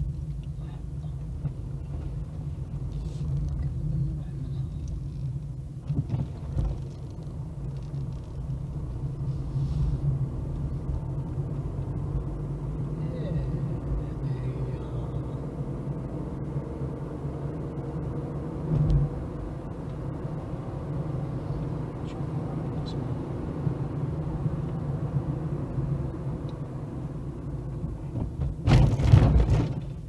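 A car driving slowly, heard from inside the cabin: a steady low rumble of engine and tyres. A brief louder burst of noise comes near the end.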